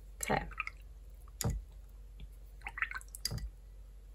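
A paintbrush rinsed in a ceramic water jar: small drips and swishes of water, with a few sharp taps of the brush against the jar, one about a second and a half in and another just past three seconds.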